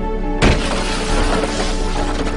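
A metal bar strikes a car's side window about half a second in and the tempered glass shatters: one sharp crack followed by a long spray of crumbling glass, over background music.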